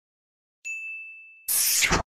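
Sound effect of a subscribe-button animation: a single bell-like notification ding about two-thirds of a second in, ringing out and fading, then a short, louder burst of noise near the end.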